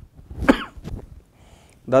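A man coughs once, short and sharp, about half a second in.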